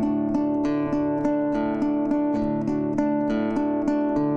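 Lute-type plucked string instrument playing an instrumental interlude of a folk song: an even run of plucked notes, about three a second, over held low notes.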